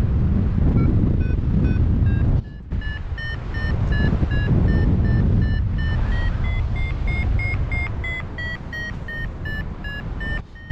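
Paragliding variometer beeping its climb tone, about three short beeps a second, its pitch rising and falling as the lift varies: the glider is climbing in a thermal. Wind rushes over the helmet microphone underneath, with a brief dropout about two and a half seconds in.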